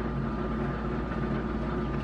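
Steady low mechanical hum with a faint high-pitched whine, unchanging in level and pitch.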